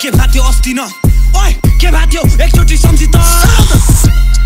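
Nepali hip hop song: rapped vocals over a beat with deep sub-bass notes and drum hits. The beat drops out for a moment about a second in, then comes back.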